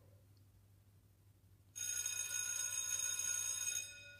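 An electric school bell rings for about two seconds and then cuts off. Before it there is near silence.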